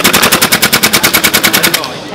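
Gas blowback airsoft rifle, a tan SCAR Mk17 replica, firing a fast full-auto burst of about a dozen shots a second that stops shortly before the end. The rifle has been chilled in ice water and is still cycling.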